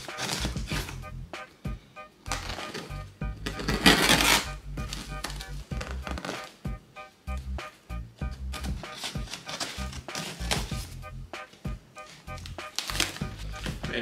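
Background music with a steady beat, over a knife slicing through packing tape on a cardboard box, with a loud tearing rasp about four seconds in and shorter scrapes and knocks of the box around it.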